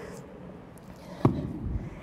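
A dumbbell set down on a rubber gym floor: one dull knock a little past halfway, followed by a softer low thud, over quiet room tone.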